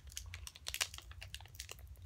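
Foil Pokémon booster pack wrapper crinkling and crackling in the hands as someone tries to tear it open; the pack is hard to open and does not give yet. Irregular small crackles.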